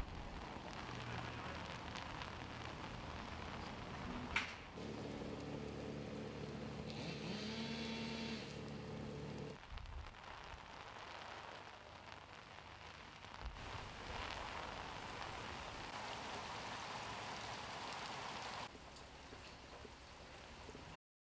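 Steady rain hiss, the sound changing abruptly several times between shots. There is a sharp knock about four seconds in, and for about five seconds in the middle a steady mechanical hum, its pitch rising briefly.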